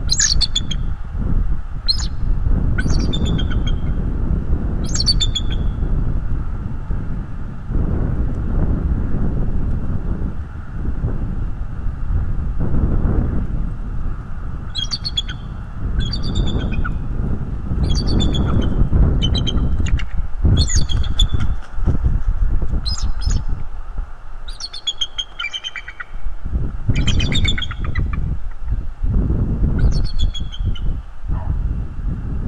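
Bald eagle calling: series of high, thin chirping calls, a few early, then a long run of calls from about halfway through. Steady wind rumble on the microphone underneath.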